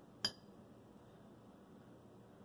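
One sharp clink of an eating utensil against a plate just after the start, with a brief ring. Otherwise faint room tone.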